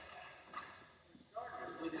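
Faint laughter dying away to near quiet, then a man's voice starting to speak near the end.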